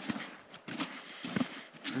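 Footsteps of a person walking through snow, an even pace of about three steps in two seconds.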